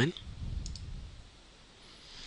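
A faint computer mouse click, press and release close together, about two-thirds of a second in, over a low room hum.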